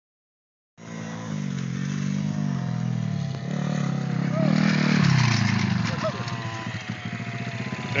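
Small Honda 50 pit bike's single-cylinder four-stroke engine revving, its pitch rising and falling several times, starting about a second in.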